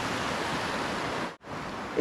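Shallow creek running over a gravel riffle: a steady wash of rushing water that cuts out abruptly for a moment about one and a half seconds in, then returns.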